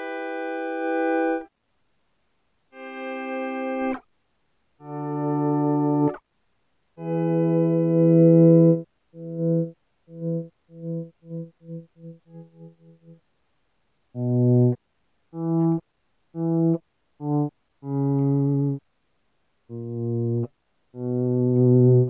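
Clean electric guitar, a Gibson SGJ, played through a volume pedal: single notes and chords swell in and cut off sharply, with short pauses between. About the middle comes a quick run of short notes that grow steadily fainter. The mini pedal's swells come on abruptly, so the guitar sounds as if it is being switched on and off more than faded in.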